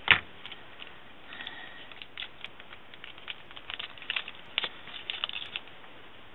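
A sharp tap, then scattered small clicks and crinkles of a plastic wrapper and a sheet of tiny craft pearls being handled on a craft table.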